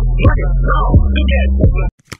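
Hip hop dance track with heavy bass, falling bass slides and rapped vocals. It cuts off suddenly near the end.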